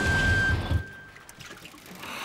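Cartoon sound effect of a small motorboat pulling away: an evenly pulsing motor chugging over rushing water, with a few high music notes stepping down above it. The sound cuts off under a second in.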